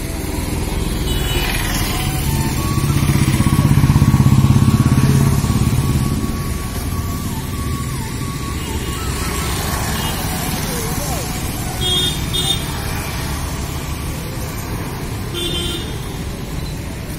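Road traffic: a motor vehicle's engine swells as it passes close by, loudest about four seconds in, then a steady traffic hum. Two short horn beeps come near the end, and another just before the end.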